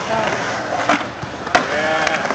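Skateboard wheels rolling on a concrete bowl, a steady rumble, with one sharp clack about one and a half seconds in.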